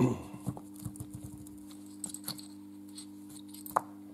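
Light metal clicks and taps of a diesel fuel injector being taken apart by hand, its nozzle needle and spring parts knocking on the bench: a knock at the start, a scatter of small clicks, and one sharp click near the end. A steady low hum sits underneath.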